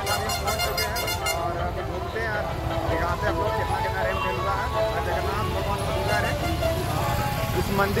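Busy street with a low engine rumble from passing auto-rickshaws and motorbikes, horns tooting, voices of a crowd, and music in the background.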